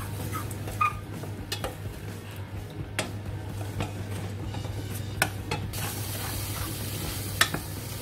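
Diced onions and spices sizzling in a hot stainless steel pot while a spoon stirs them, with scattered clicks and scrapes of the spoon against the pot. The high sizzle grows brighter about six seconds in.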